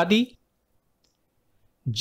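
A man's voice speaking Hindi finishes a word, then about a second and a half of dead silence, and the voice starts again just before the end.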